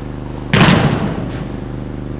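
A single loud thud of a football being struck about half a second in, echoing briefly in the indoor hall, over a steady low hum.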